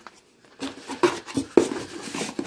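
Items being handled inside a cardboard shipping box: irregular rustling and scraping with a couple of light knocks, starting about half a second in.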